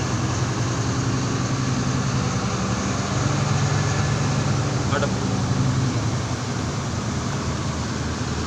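Tractor diesel engine running steadily, heard from the cab; it grows a little louder about three seconds in and eases back shortly after six seconds.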